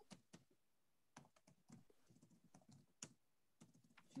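Faint, scattered computer keyboard keystrokes, a few irregular clicks with gaps between them, over otherwise near-silent room tone.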